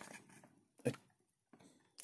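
Quiet room tone in a pause of speech, broken once by a single short spoken word about a second in.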